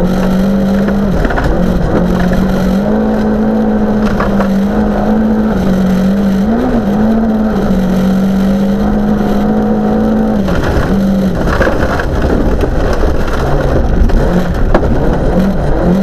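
Volvo 940 rally car's engine heard from inside the cabin, running hard and pulling through the gears on a gravel stage: a steady drone with brief dips at each shift and a longer lift about two-thirds of the way through. Gravel and tyre noise fill in underneath.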